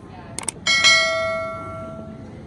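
Subscribe-button overlay sound effect: a quick double mouse click, then a bright bell ding that rings and fades away over about a second.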